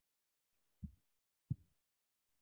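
Near silence, broken by two faint, short, low thumps about two-thirds of a second apart.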